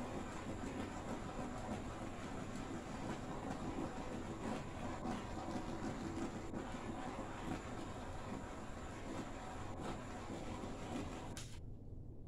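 Handheld torch flame giving a steady hiss as it is swept over wet black acrylic pour paint to pop the surface bubbles, which would otherwise dry as little pits and holes. The torch cuts off suddenly near the end.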